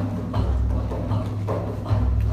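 A hand drum beating a steady rhythm of deep, booming strokes, about two or three a second, as part of Sufi sema music.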